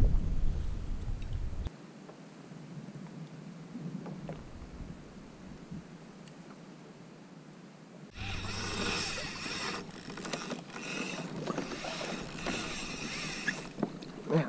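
Water sloshing around a kayak hull with wind on the microphone, low and rumbly at first, then louder and brighter for the last six seconds.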